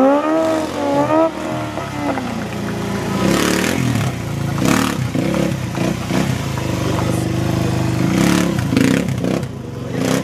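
Motorcycle engine revving, its pitch rising and falling in the first second, then held on the throttle with several sharp surges while the bike is kept up on its back wheel in a wheelie.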